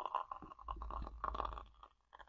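Piping bag squeezing a thick whipped mixture through a metal piping tip: a dense, wet crackling squelch, with a low rumble through the middle, thinning out near the end.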